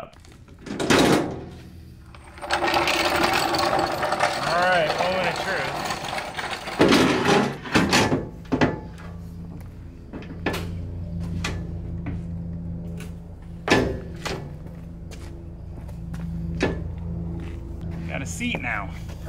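Scrapes, clanks and sharp separate knocks from a floor jack being taken out from under a newly mounted trailer step, then weight put on the step to test that it holds. A low steady hum runs underneath from about halfway.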